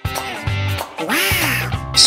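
Bright children's background music with a repeating bass line. About a second in, a short cartoon-style sound effect rises and falls in pitch over it.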